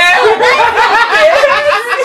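Loud, hearty laughter: an unbroken run of quick, high-pitched laugh pulses.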